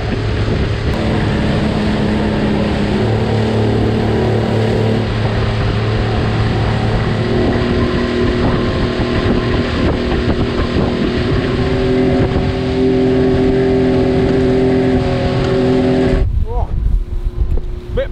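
Outboard motor of a small speedboat running hard at planing speed, its steady hum drifting slightly in pitch, over wind and the rush of the hull through choppy water. Near the end the sound cuts abruptly to something much quieter.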